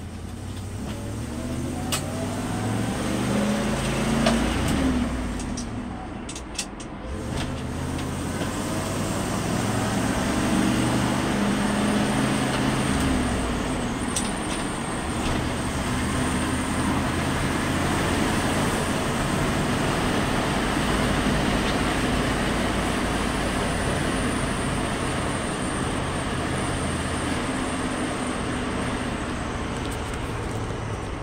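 1979 Ford F150 pickup heard from inside the cab on the move. The engine climbs in pitch as it accelerates, falls away during a gear change about five seconds in, then pulls up again and settles into steady cruising with road noise.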